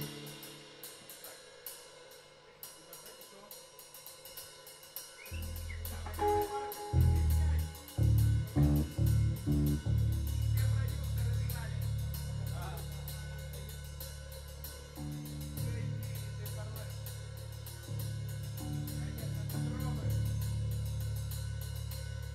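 Live rock band: the drummer keeps a steady cymbal pulse of about four strokes a second, alone at first, then about five seconds in the bass and electric guitar come in loud with low sustained notes over the drums.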